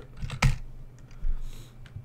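Typing on a computer keyboard: irregular short keystroke clicks, the sharpest about half a second in.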